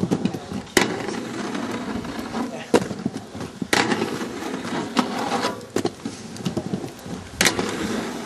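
Aggressive inline skates rolling over concrete paving slabs, with about five sharp clacks of skates striking the metal handrail and landing on the paving.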